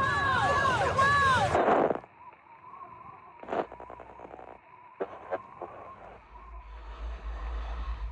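Warbling radio interference, a run of rising-and-falling squeals, that cuts off about two seconds in. A quiet stretch follows with a faint steady hum and a few soft knocks, and a low rumble swells near the end.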